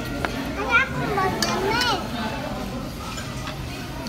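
A child's high-pitched voice: a few wordless, sing-song squeals that rise and fall, about half a second to two seconds in, with a sharp click or two, over a murmur of background chatter.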